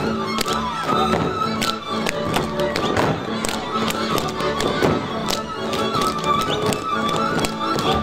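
Live Hungarian village string-band music in the Kalotaszeg style, a fiddle melody over a steady drone-like accompaniment, with the dancers' boot slaps and stamps cracking out irregularly and quickly on top of it.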